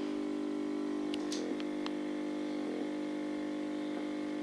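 Steady electrical buzz with many overtones from a CRT television playing a VHS tape, with a few faint clicks about a second and a half in.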